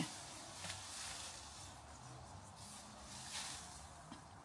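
Mostly quiet, with faint rustles of leaves and stems as a shrub is tugged at its base to work it loose.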